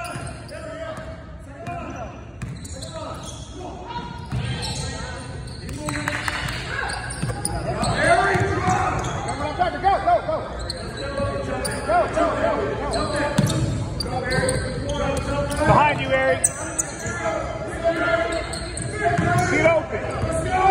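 Basketball dribbled on a hardwood gym floor during play, with voices calling out across the large gym.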